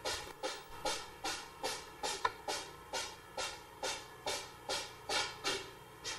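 A steady rhythm of short swishing sounds, about two and a half a second, each starting sharply and fading quickly.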